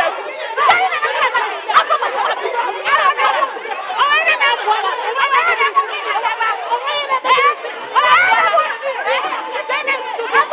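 A group of women quarrelling, shouting over one another at once in a loud, unbroken tangle of overlapping voices.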